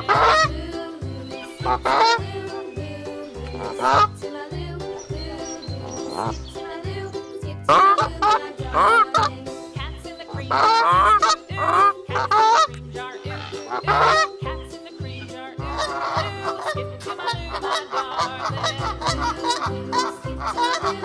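Geese honking: single honks every second or two, then many honks in quick succession in the last few seconds.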